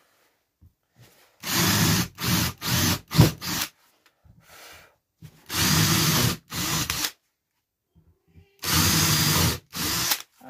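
Ryobi cordless drill boring small starter holes through a sheet of board, to let a jigsaw blade in. It runs in three spells: a stuttering run of short bursts in the first few seconds, a steadier burst about halfway, and another near the end.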